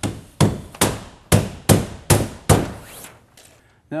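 Hammer driving cap nails through housewrap and foam board: about seven sharp strikes, two to three a second, stopping near three seconds in.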